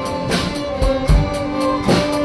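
Youth string ensemble of violins and acoustic guitars playing a melody in held bowed notes, with a low beat about every three quarters of a second.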